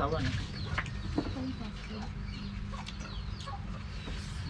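A chicken clucking: a few short clucks around the start and a couple more about a second in, over a steady low hum.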